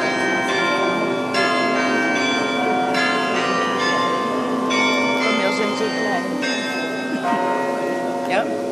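Carillon bells played from the baton keyboard: full chords of many bells struck afresh every second or two, each ringing on under the next.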